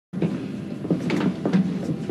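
A few light knocks and clatter over a steady low hum, like cabin doors or compartments being handled.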